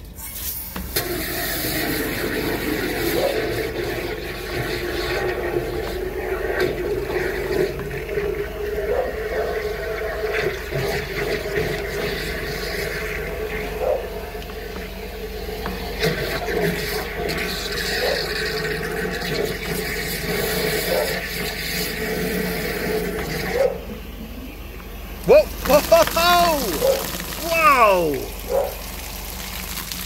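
High-pressure drain jetter running, water rushing steadily through the pipe as the whip-hose nozzle works on the blockage. It drops off about 23 seconds in, and near the end there are several short, loud sounds that rise and fall in pitch.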